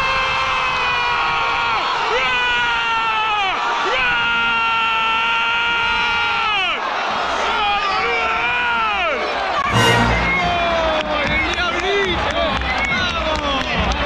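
A man's long held screams in a stadium crowd: two sustained yells of about three seconds each, dropping in pitch at the end as his breath runs out, over crowd cheering, followed by shorter shouts and a sudden thump about ten seconds in.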